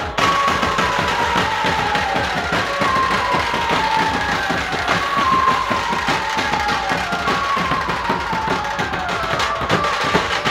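A dhumal band playing: dense, fast drumming under an amplified lead melody. The melody plays a falling phrase that repeats about every two and a half seconds.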